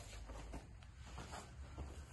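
Faint rustling and shuffling of jiu-jitsu gis and bodies moving on foam mats, over a low steady room hum.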